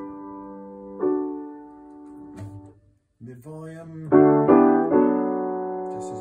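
An 1898 Steinway Model C grand piano, freshly rehammered and regulated, being played: a soft chord about a second in rings and fades, then after a short break a run of notes builds into louder, fuller chords around four seconds in that ring on.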